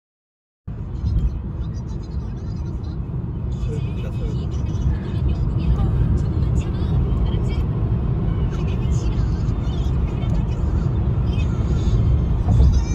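Road noise inside a car driving at highway speed: a steady low rumble of tyres and engine that starts suddenly about a second in, after silence.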